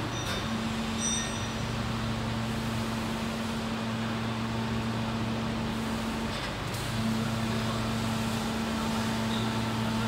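PET preform injection moulding machine running with a 24-cavity mould closed: a steady machine hum with a low tone that drops out briefly about six and a half seconds in and then comes back, with a few light clicks.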